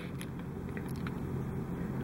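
Quiet, steady background noise between sentences: room tone with a faint low hum and a few light clicks.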